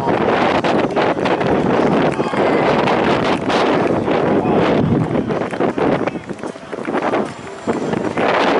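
Wind buffeting the microphone in uneven gusts, with indistinct voices under it.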